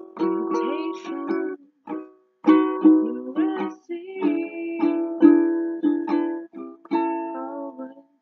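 Ukulele strumming chords for a slow song, in phrases with brief breaks between them.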